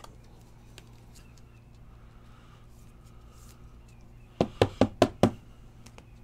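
Five quick, sharp knocks on a tabletop, all within about a second, about four seconds in, over a low steady hum.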